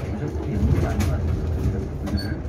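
Cabin noise inside a low-floor electric city bus on the move: a steady low rumble of road and running noise, with faint voices in the background.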